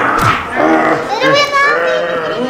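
Children shrieking and shouting in a playful scuffle, with background music underneath.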